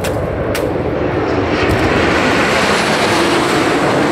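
A formation of light propeller aircraft flying low overhead. Their engines are loud and steady, growing louder over the first two seconds.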